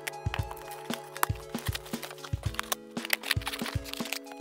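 Kitchen scissors cutting clumsily through the packing tape and cardboard of a box, a quick irregular run of sharp snips and cracks. Background music with held notes plays underneath.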